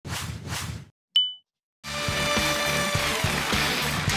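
Logo sting: two quick whooshes, then a single bright ding that rings out briefly. About two seconds in, upbeat jingle music with a steady beat starts.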